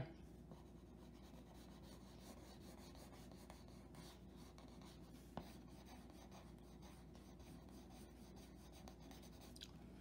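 Faint pencil strokes scratching on drawing paper as a sketch is shaded, with a small tap about five and a half seconds in.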